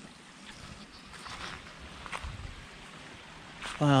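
Footsteps of a person walking along a sandy, muddy creek bed, faint and irregular, with a low thump a little over two seconds in.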